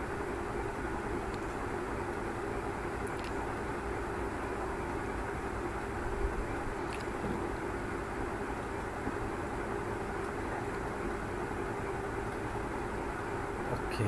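Steady background hum and hiss from the recording setup, with a few faint clicks, likely the computer mouse clicking through a menu.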